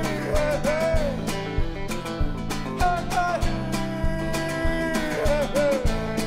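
A live band playing a song: strummed acoustic guitar and chords over a steady beat of a little under two beats a second, with a melody line that bends up and down in pitch.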